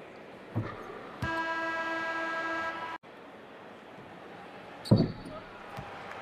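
Sounds of a basketball game during a free throw: a basketball bounces on the hardwood court, then a steady horn-like tone is held for about a second and a half and cuts off suddenly. A louder single thud of the ball comes near the end.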